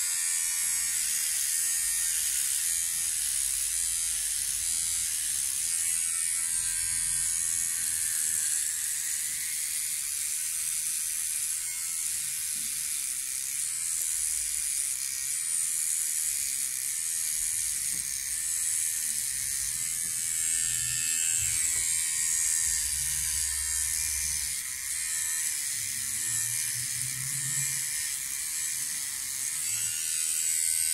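MicroTouch Solo cordless beard trimmer running steadily as it is worked over beard hair, a high-pitched whir that is far from quiet. Its blades are failing to cut the beard.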